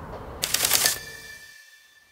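Short editing sound effect: a rapid burst of about ten clicks half a second in, then a single high ringing tone that slowly fades, marking the cut into the closing credits.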